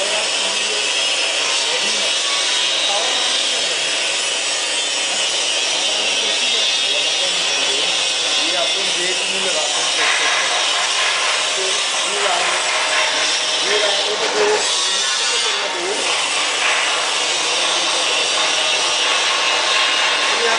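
Steady hissing rush of the vacuum pump drawing down a glass rotary evaporator during a vacuum test, with no rhythm or change in loudness; its tone shifts slightly about halfway through.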